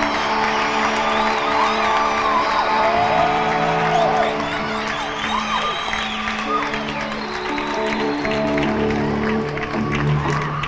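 Concert crowd cheering, whooping and whistling over held chords from the band between songs; the chord changes about six and a half seconds in.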